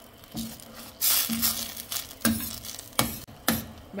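A spoon stirring a simmering buffalo-honey sauce in a stainless steel pan, with about five sharp scrapes or knocks against the pan and a sizzling, bubbling hiss between them.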